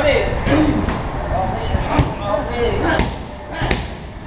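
Strikes landing on Thai pads and the body during Muay Thai padwork and clinching: several sharp slaps about a second apart, the loudest shortly before the end, with short shouted calls between them.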